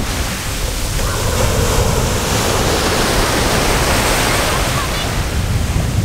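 Ocean surf breaking and washing up the sand at the water's edge: a steady, loud rushing.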